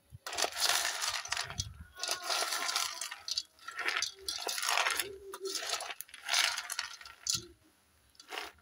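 Palm kernels rattling and scraping against the sides of a metal pot as they are stirred with a wooden stick, in a series of strokes about a second apart. The kernels are being heated in the pot to draw out palm kernel oil, which is just beginning to form.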